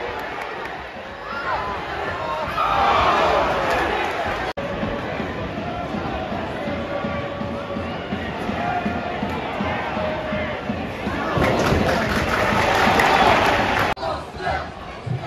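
Football stadium crowd noise: many fans' voices shouting together at once. It swells about two seconds in and again from about eleven seconds, with a brief sudden break in the sound between the two.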